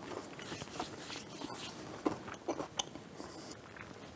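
Faint chewing of a chocolate peanut butter cup topped with chocolate-coated crispy rice: soft crunching with a few sharper crackles a little past halfway.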